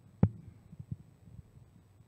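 Microphone handling noise: one sharp thump about a quarter second in, then a few soft low bumps as the microphone is handled at the lectern.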